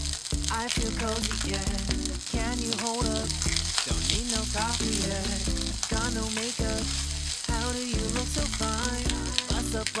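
Fried rice sizzling in a nonstick pan, with a spatula scraping and tossing it. A song with a steady beat plays loudly over it throughout.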